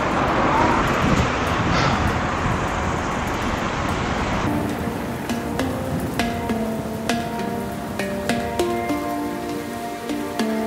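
Rushing wind and road noise on the microphone of a camera riding along on a moving bicycle, cut off about halfway through by background music of plucked, guitar-like notes.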